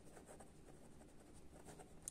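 Faint scratching of a ballpoint pen writing on a notebook page in short strokes.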